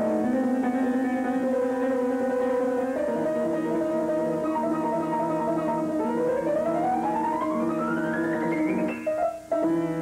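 Yamaha piano played solo: sustained chords, then a rising run of notes from about six seconds in. The playing breaks off briefly near the end and resumes.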